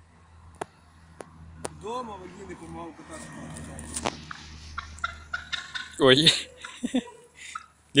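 Drawn-out, wavering vocal calls: a soft one about two seconds in and a louder one about six seconds in, over a low steady rumble with a few sharp clicks.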